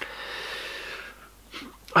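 A man's long breath out, a sigh lasting about a second, then a short pause before he speaks again.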